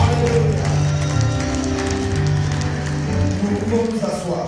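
Electronic keyboard playing slow, sustained chords, with the held notes changing every second or so.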